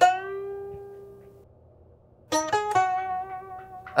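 Gibson Birdland hollow-body electric guitar: one note picked and left to ring out and fade, then after a brief pause a couple of quick notes and a long sustained one, a whining, bluesy lick.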